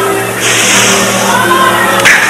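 Worship music with held low notes playing steadily under the service, while the congregation's voices rise in praise for about a second, starting about half a second in.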